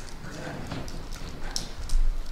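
Scattered light clicks and taps, a few each second, from small objects being handled, over a faint room murmur.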